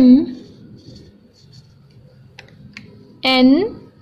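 A voice calling out a single letter name twice, about three seconds apart, over faint felt-tip marker scratching on paper, with two light clicks in between.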